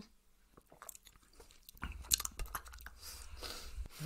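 Close-miked mouth sounds of sipping and tasting a cocktail: small clicks, lip smacks and a slurp, starting after a quiet second and a half, over a low rumble.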